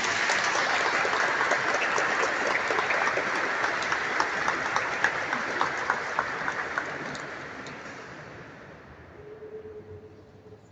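Congregation applauding, a dense patter of hand claps that holds steady and then dies away over the last few seconds.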